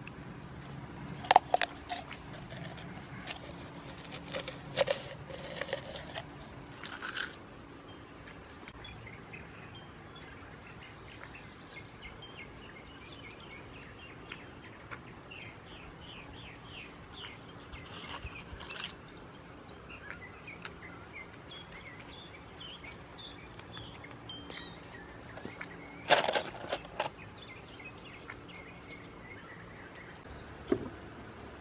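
Outdoor yard background with a run of quick, high bird chirps in the middle. A few sharp clicks and taps, the loudest sounds, come in the first seven seconds and again around a couple of seconds before the end, from pieces of stained glass being handled and set into the mortar pot.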